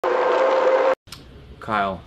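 A loud, steady noisy sound with a held tone over the title card cuts off abruptly about a second in. Near the end comes a short man's voice sound, falling in pitch.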